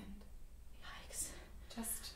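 Soft, whispered speech, faint and broken up, over a steady low hum.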